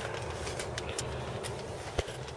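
Low steady rumble in a minivan's cabin, with faint ticks and rustles as a handheld camera is moved about, and a small knock right at the end.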